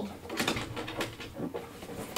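Handling noise from a robot vacuum's self-emptying dock: a few soft, uneven rustles and light clicks as the dust bag and the plastic front cover are touched.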